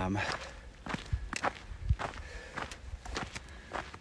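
Footsteps of a hiker walking on a dry dirt trail, about two steps a second.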